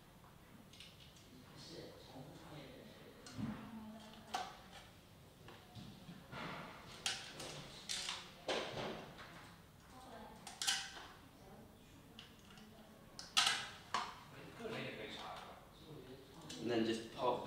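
Small bolts and a 3D-printed plastic board being handled on a workbench: scattered light clicks, taps and short scrapes as the bolts go through the servo's mounting holes, with a sharper click about 13 seconds in.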